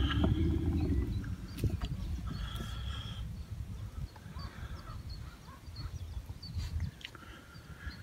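Low rumble of the boat's motor and propeller in the water, fading out about seven seconds in, with a few short waterfowl calls above it.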